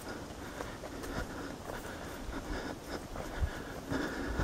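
A hiker's footsteps on a dirt forest trail: soft, uneven steps about twice a second. A low wind rumble on the microphone runs under them.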